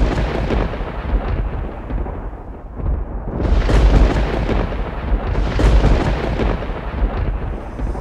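A loud rumbling intro sound effect under a logo reveal: a deep, noisy rumble that hits suddenly and swells twice, around four and six seconds in.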